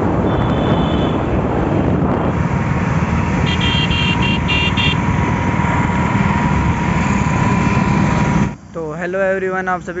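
Wind rumbling on the microphone with road and engine noise from a moving motorcycle, with a few short high horn beeps about four seconds in. It cuts off suddenly near the end, where a song with a singing voice takes over.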